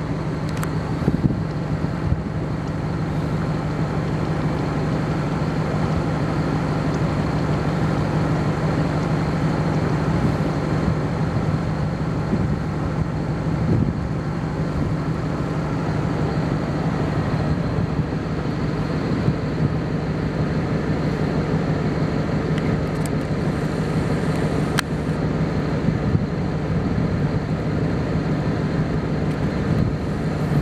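A steady low engine hum, like a vehicle idling, that holds an even pitch.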